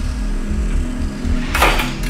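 Background music with a low pulse. About a second and a half in, a short, sharp clatter as a wooden pole shoves the THOR humanoid robot hard during a balance push test.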